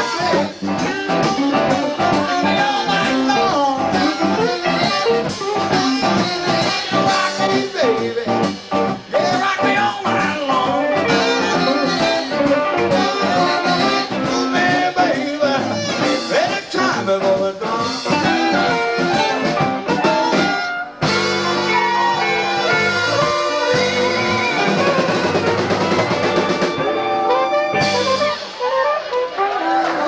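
Live band playing blues-rock: electric guitar and drums with singing. The music changes abruptly about two-thirds of the way through.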